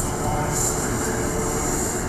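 Steady rumbling background noise with a constant low hum and a high hiss that comes and goes.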